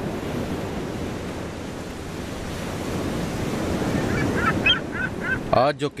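Sea surf washing steadily, with a few short bird cries near the end.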